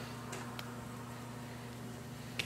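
Quiet room tone with a steady low hum, and a couple of faint soft ticks early on as hands handle a cut block of moist clay.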